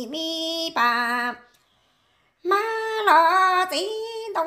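A woman singing Hmong kwv txhiaj, unaccompanied sung poetry, in long held notes with a wavering vibrato. She stops for about a second in the middle, then resumes.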